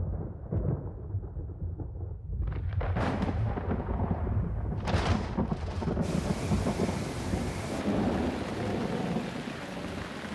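Hurricane storm: a steady low rumble of wind and thunder, joined about two and a half seconds in by the hiss of heavy rain, which grows fuller about six seconds in.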